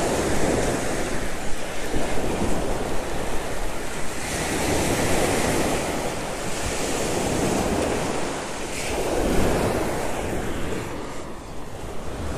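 Waves breaking and washing up on the beach, swelling and easing a few times, with wind buffeting the microphone.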